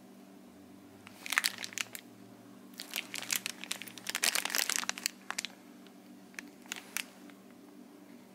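Clear plastic parts bags crinkling as they are handled, in two main bouts of crackling with a few last crackles near the end.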